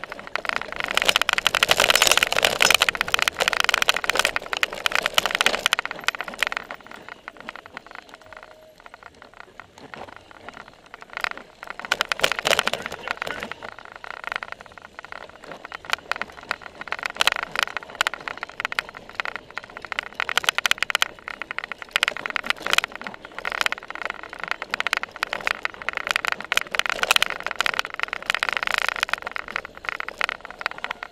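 Cyclocross bike ridden over a grass course, heard from a camera mounted on its seat: a constant rattle and knock of the bike over bumps with tyre and wind noise, loudest for the first few seconds and rising again in surges later.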